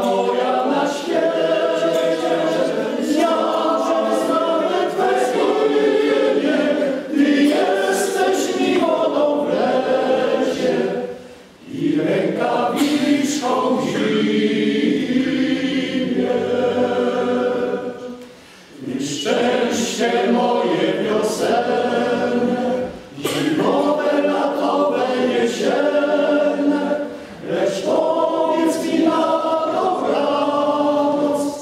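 Men's choir singing a cappella in several voice parts, with short breaks between phrases.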